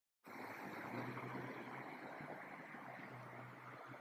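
Faint, steady outdoor background noise: an even hiss with a low hum under it, starting abruptly a moment in.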